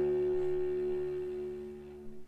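A held chord from a violin, cello and piano trio dying away, several steady pitches fading slowly toward quiet.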